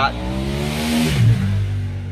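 A car going fast past the parked van: its engine and tyre noise swell and then fade over about a second, the engine note dropping in pitch as it goes by.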